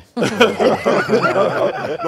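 Laughing and chuckling from people on the panel, overlapping with a few spoken words, starting a moment in.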